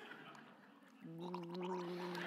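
A man gargling a mouthful of water from a bottle, a steady, even-pitched gargle that starts about a second in and is held.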